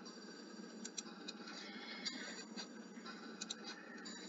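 Several faint, sharp computer mouse clicks over a low steady hiss of room and recording noise.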